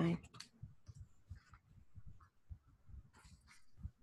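Faint scattered clicks and soft taps of hands handling a deck of tarot cards, with a brief rustle about three seconds in.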